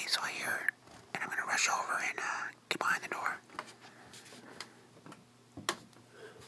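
A man whispering, a few short whispered phrases in the first three and a half seconds, then quieter, with a few light clicks.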